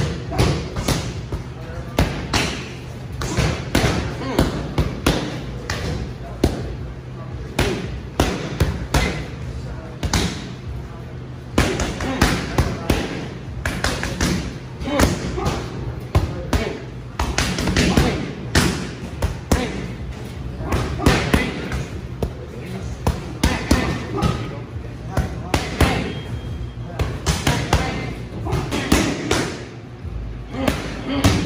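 Boxing gloves striking focus mitts in quick combinations: a run of sharp smacks, often several a second, broken by short pauses between flurries.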